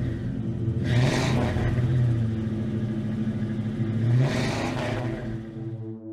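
A car engine revved twice, about a second in and again around four seconds, the second rev rising in pitch, over a steady low music drone.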